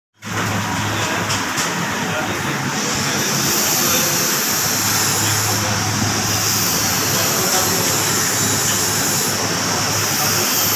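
Steady loud background noise with a constant low hum and a hiss that grows stronger about three seconds in.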